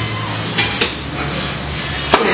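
A single sharp clank of heavy dumbbells a little under a second in, over a steady background hum.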